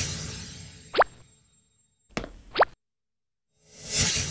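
Cartoon sound effects over a scene transition: a swelling whoosh that fades away, then two quick rising plops about a second and a half apart, and another whoosh rising near the end.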